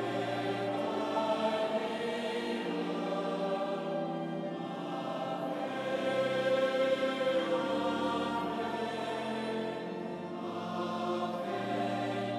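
A choir singing a slow hymn in long held chords, the notes changing every second or two.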